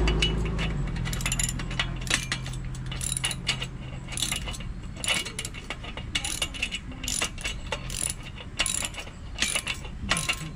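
Hand ratchet wrench clicking as a bolt is tightened on a steel trailer dolly frame: repeated runs of quick pawl clicks with the back-and-forth strokes of the handle. A low drone fades out over the first few seconds.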